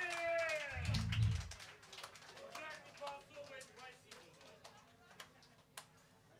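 The band's last low bass notes stop about a second and a half in, while a voice through the PA slides down in pitch. Then the club goes quiet, with faint voices and scattered clicks and taps, one sharper click near the end.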